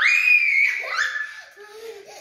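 A child's long, high-pitched shriek, then a second shorter one about a second in, each falling slowly in pitch.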